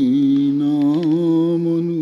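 A man's voice chanting Quranic verses in Arabic in the melodic recitation style (tilawah), holding one long note that dips at the start and wavers briefly about a second in.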